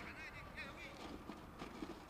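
Faint pitch-side sound of a women's football match: distant players' voices calling out, mostly in the first half second, over low background noise.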